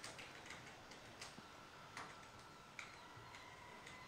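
Near silence with a few faint, irregularly spaced clicks of a computer mouse, the clearest right at the start.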